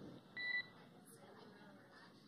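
A single short electronic beep on the air-to-ground radio loop, a little after the start, followed by faint radio hiss.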